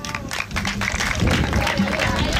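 A small group clapping: a quick run of separate hand claps, with voices talking at the same time.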